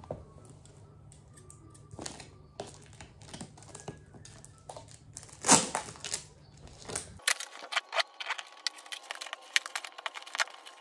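A brown-paper and cardboard parcel being handled and cut open: paper crinkling with scattered clicks and scrapes, one louder crackle about five and a half seconds in, and a quicker run of small scratches and clicks in the last few seconds.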